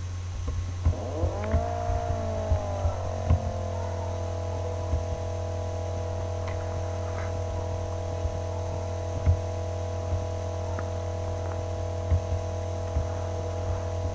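Steady low electrical hum. About a second in, a higher drone with several overtones joins it, slides down in pitch over a couple of seconds, then holds a steady pitch, like a motor settling to speed.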